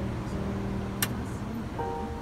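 Power sliding rear door of a Honda minivan opening, a steady low hum with one sharp click about a second in, under background music of held notes.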